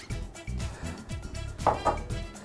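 A small ceramic bowl knocking a few times against a plastic mixing bowl as flour is tipped out of it, over background music.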